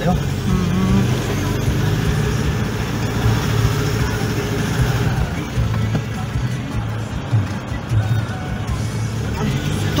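Car running along a narrow road, heard from inside the cabin: a steady low rumble of engine and tyres.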